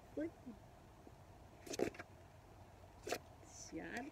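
Utility box cutter slitting the tape on a cardboard shipping box: two short, sharp cutting sounds, one about two seconds in and a second, fainter one about a second later.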